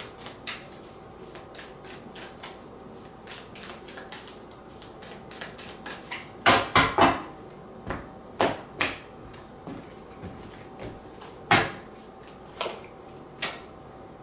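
Tarot cards being drawn from a deck and laid out on a table: light flicks and clicks of card on card, then from about halfway a series of sharper slaps as cards are set down one after another, about nine in all.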